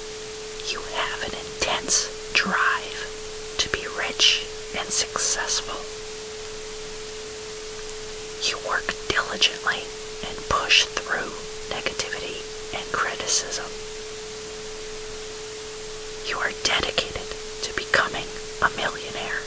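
A steady pure tone near 432 Hz held under a constant wash of noise, with a whispered voice coming in three spells of phrases.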